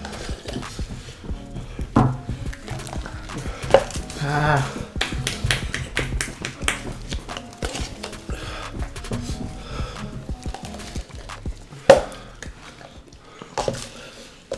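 Scattered knocks and clinks of drinking cups, glasses and a bottle being handled and set down on a wooden table, with a few sharp knocks, the loudest about 12 seconds in. Faint music runs underneath.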